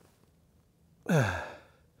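A man sighs once, a voiced sigh that falls in pitch, about a second in.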